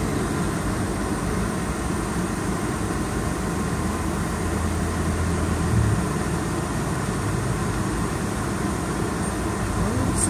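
Steady engine and traffic noise heard from a slow-moving tuk-tuk on a city street. A low rumble swells from about three and a half seconds in and falls away just before the six-second mark.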